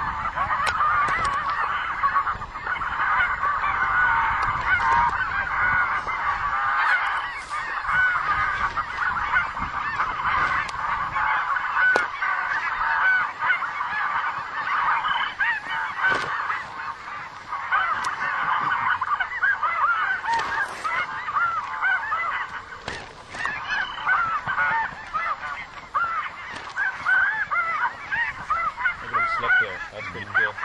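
A large flock of snow geese calling overhead: a dense, continuous chorus of many overlapping honks, with a few faint sharp ticks among them.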